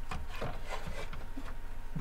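Soft rubbing and a few light taps of hands handling a wooden guitar back plate on a workbench, over a steady low hum.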